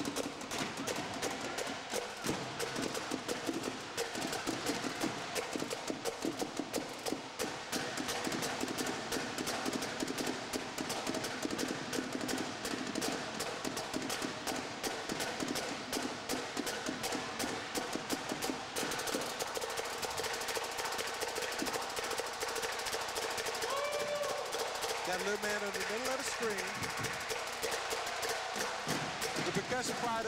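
Marching drumline of snare and bass drums playing a fast, continuous cadence, with voices and shouts over it in the second half.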